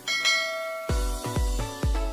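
A bright bell chime sound effect rings at the start and fades over about a second. Then electronic music with a heavy kick drum, about two beats a second, starts about a second in.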